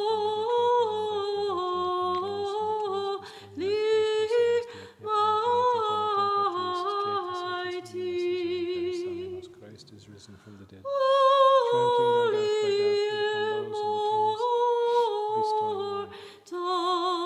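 Unaccompanied Orthodox church chant: a voice sings held notes that step up and down in phrases, with short breaths between them and a longer pause about two-thirds of the way through.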